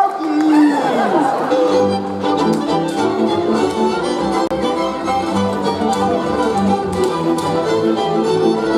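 A Moravian folk band of fiddles, double bass and cimbalom playing dance music, with the bass and full band coming in under the fiddles about two seconds in.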